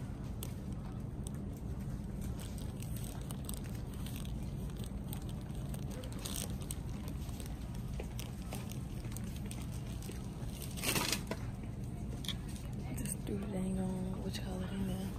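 Steady low hum of supermarket ambience with scattered small handling clicks and a short burst of rustling about eleven seconds in; a voice starts near the end.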